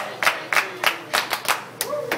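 Several people clapping their hands in a steady rhythm, about three claps a second.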